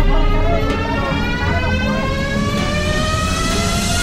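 Boat engine running under way, its pitch rising slowly and steadily as the boat speeds up, over a heavy low rumble of wind and water.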